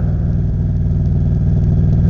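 Motorcycle engine running steadily at cruising speed, heard from the rider's seat, with wind and road noise.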